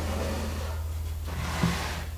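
A steady low hum over faint room noise, with one soft knock near the end.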